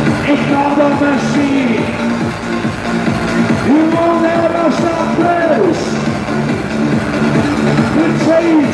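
Loud electronic dance music from a DJ set over a club PA, with a lead line that slides up, holds for about two seconds and slides back down.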